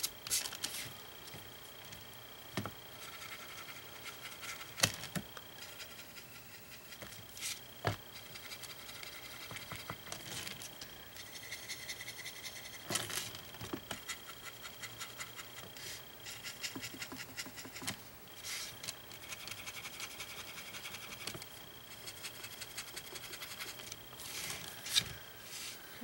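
Quiet scratchy rubbing of a small paintbrush working acrylic paint onto a painted wooden plate with very gentle pressure, with scattered light clicks and taps.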